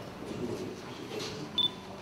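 Faint room noise in a hall, broken about one and a half seconds in by one short, high electronic beep.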